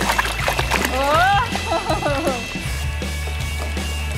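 Background music with a steady bass under an excited voice that rises in pitch about a second in, over light water splashing in a plastic toy water table.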